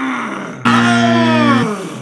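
A man's drawn-out groans, falling in pitch: one tails off in the first half-second, then a louder, longer one follows and sinks away before the end. The groans come as he learns his guess was wrong.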